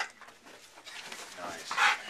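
Excited dog held by its collar, with a short whine and then a loud, short bark near the end.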